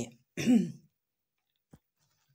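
A woman's voice trails off, then gives a short, wordless vocal sound about half a second in, followed by near silence with one faint click.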